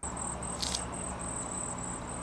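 High-pitched insect chirping in a steady run of short, evenly repeated pulses over a faint low hum of outdoor ambience, with one brief higher rustle or chirp about two-thirds of a second in.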